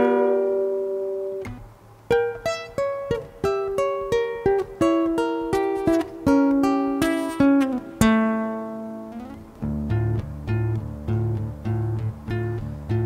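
Acoustic guitar played alone: a chord rings and fades, then single plucked notes ring out one after another. A little before the end the playing settles into a steady repeating pattern with low bass notes underneath.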